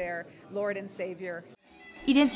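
A woman's voice with strongly rising and falling pitch, breaking off about one and a half seconds in; after a brief gap, music begins right at the end.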